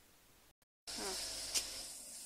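A steady high-pitched hiss starts abruptly about halfway through, after a brief dropout. A short spoken sound and one sharp click fall over it.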